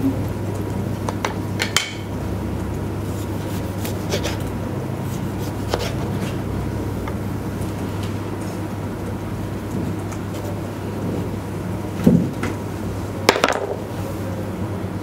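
Knife cutting a pepper on a plastic cutting board: sparse taps and knocks every second or two, with two louder knocks near the end, over a steady low hum.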